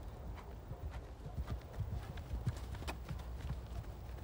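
Hoofbeats of a ridden horse on a sand arena surface, irregular soft knocks over a low steady rumble.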